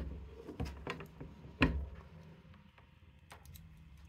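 Faint handling noise from a metal-cased scanner being turned and a BNC antenna connector being fitted: a few light clicks and knocks, the loudest about one and a half seconds in.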